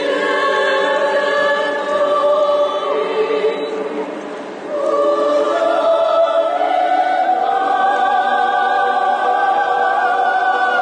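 Mixed choir of men and women singing long held chords. The sound eases off around four seconds in, then a fuller chord enters about a second later and is held.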